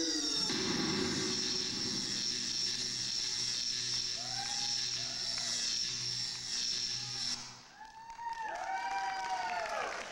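Stage-show soundtrack over the theatre's speakers as a sung number ends: a steady hiss over a low hum that cuts off sharply about seven seconds in, with electronic swooping tones that rise and fall in arcs, thickest near the end.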